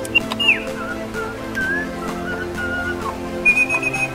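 Little Live Pets Lil' Bird electronic toy bird whistling through its speaker after its try-me button is pressed. It gives a falling whistle near the start, a few short held whistles, and a warbling whistle near the end, over background music.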